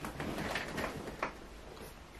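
Quiet room tone with a few faint, brief clicks.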